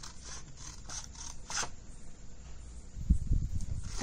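Scissors snipping through folded paper, a few short cuts in the first couple of seconds, followed by paper rustling and low bumps as the cut piece is pulled free near the end.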